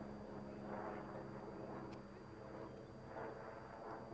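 Faint, steady drone of a radio-controlled model plane's motor flying high overhead.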